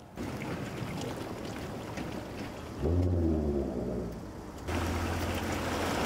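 Boat trailer's wheels rolling into lake water with splashing, over a vehicle engine's steady low note. Earlier, an engine note falls in pitch about three seconds in.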